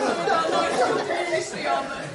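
Speech only: voices talking in a large hall, with several overlapping.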